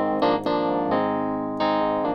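Casio Privia Pro PX-5S playing a reed (Wurlitzer-type) electric piano tone through its M-Stack amp simulator: chords struck a few times, each ringing on and slowly fading.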